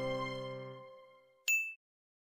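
The closing chord of a children's song fading away, then, about a second and a half in, a single short bright ding.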